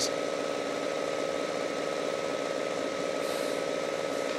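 A steady mechanical hum with a thin high whine over it, unchanging throughout.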